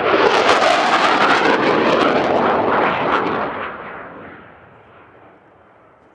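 Swiss Air Force F/A-18C Hornet's twin General Electric F404 turbofans at full display power, a loud jet noise with a rough crackle. It holds for about three and a half seconds, then fades away quickly as the jet climbs off.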